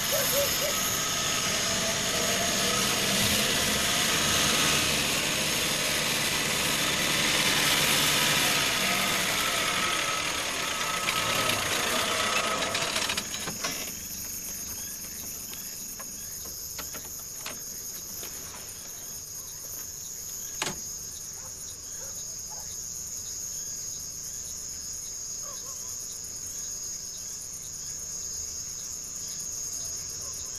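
Crickets chirping in a steady, high-pitched chorus. For the first dozen seconds a loud, dense noise covers them, and it cuts off abruptly about 13 seconds in. After that the chirping goes on alone, with a few faint clicks.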